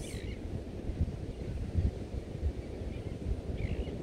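Wind blowing across the microphone: a low, uneven buffeting with a few stronger gusts, the loudest just under two seconds in.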